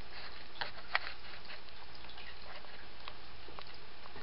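Steady low room hum with a few faint light clicks, the clearest about a second in.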